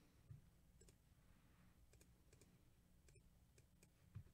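Near silence with a few faint, scattered clicks over a low background hum.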